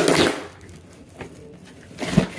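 Cardboard shipping box being pulled open: a brief noisy rip and rustle of cardboard at the start, then quieter handling with a single faint tap about a second in.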